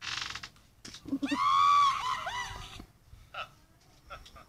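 A short breathy burst of noise, then a loud, high-pitched scream about a second in that holds and wavers in pitch for nearly two seconds.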